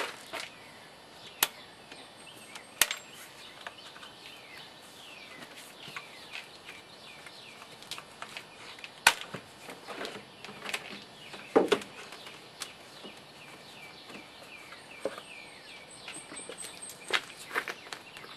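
Scattered sharp clicks and knocks as a car's plastic air filter housing is unclipped and its lid lifted off to expose the pleated filter. Birds chirp faintly in the background.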